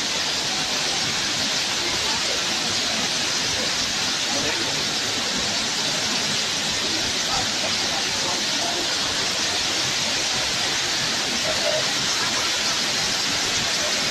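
Five Falls waterfall at Courtallam (Kutralam), a steady, unbroken rush of falling water.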